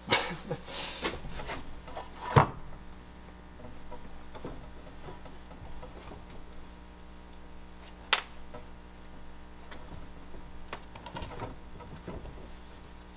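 A few sharp knocks on a workbench, the loudest about two seconds in and another near eight seconds, then a wooden rolling pin rolling back and forth over a slab of clay with a soft, steady rubbing.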